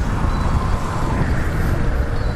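Steady rush of wind and road noise at a helmet-mounted microphone, with the Kawasaki Vulcan S 650's parallel-twin engine running underneath, while riding in freeway traffic at about 35 mph.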